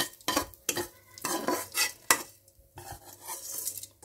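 A spatula scraping and knocking against a nonstick frying pan as stir-fried rice is tipped out into a rice cooker's inner pot: a run of irregular scrapes and clacks with a short pause a little past the middle.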